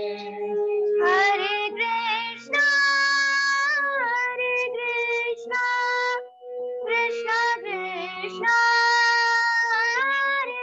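A girl singing a slow melody with long held notes, accompanying herself with sustained notes on an electronic keyboard, heard over a Zoom call.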